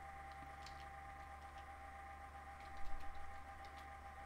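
Faint clicking of a computer keyboard being typed on: a few scattered keystrokes, then a quick cluster of them about three seconds in. Under it runs a steady low electrical hum with a thin high tone.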